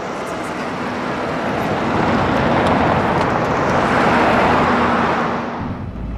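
A vintage car driving past in the street: engine and tyre noise swells over about two seconds, holds, then fades away near the end, with a faint steady engine hum underneath.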